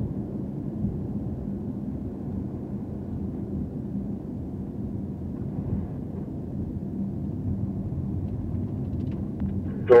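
Porsche 911 Turbo S's twin-turbo flat-six ticking over at low revs while rolling slowly, heard from inside the cabin as a steady low rumble of engine and road noise.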